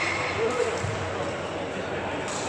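Busy badminton hall: a hubbub of voices with scattered hits and footfalls from games on the surrounding courts, echoing in the large room.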